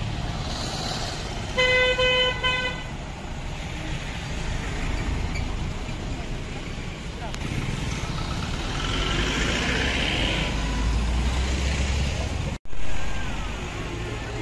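A car horn toots twice in quick short blasts about two seconds in, over steady traffic and engine noise from a slow-moving line of cars. The sound drops out for an instant near the end.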